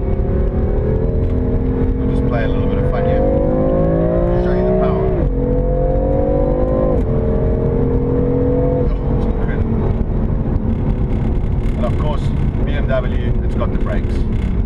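BMW M4's twin-turbo straight-six heard from inside the cabin, accelerating through the gears: the engine note climbs and drops sharply at two upshifts about five and seven seconds in, then holds and slowly falls away as the car eases off.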